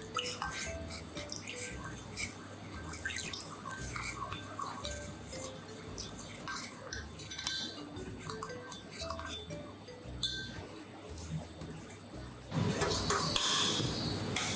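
Light background music over a metal spoon stirring and clinking in a ceramic bowl as a soy and oyster sauce mix with cornstarch is stirred, with water poured in at the start. Near the end a louder steady noise sets in.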